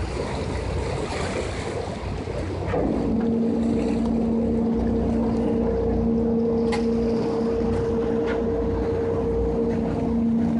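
Passenger boat's engine running. Its steady droning hum comes in about three seconds in and holds, over wind and water noise on the open deck.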